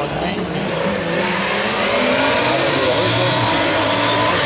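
Several Super 1600 rallycross cars racing past in a pack, their engines revving up and down in pitch as they accelerate out of the corner. The sound grows louder after about a second.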